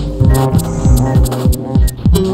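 Upright bass plucked together with a modular synthesizer: low electronic thumps that drop sharply in pitch, several a second, over sustained synth tones and bass notes, with short high clicks.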